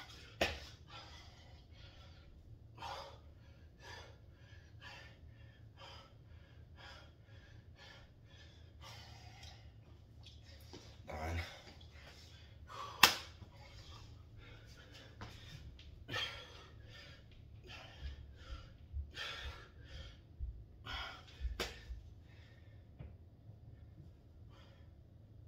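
A man's heavy breathing between burpee push-ups and squats, panting in and out about once a second. A few sharp knocks cut in, the loudest about halfway through.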